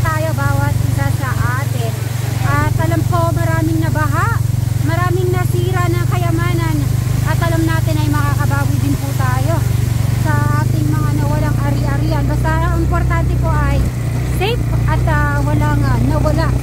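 A small vehicle engine, motorcycle-type, running steadily with a low hum, and a high-pitched voice going on over it throughout.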